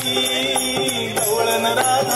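Live Indian devotional-folk stage music from a band with drum kit: a melody line over steady percussion hits.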